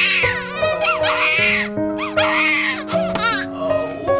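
Newborn baby crying in several short bursts of wailing, over background music with long held notes.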